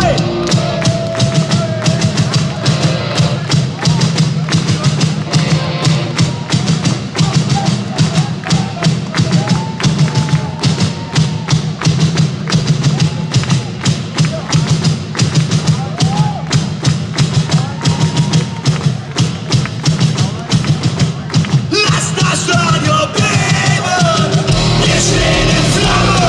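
Live rock drum kit playing a fast, steady beat over a held bass note in a stripped-back break, with voices over it; the full band comes back in near the end.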